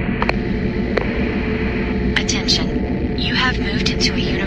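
Brief voice fragments over a steady low droning hum, with a few sharp clicks.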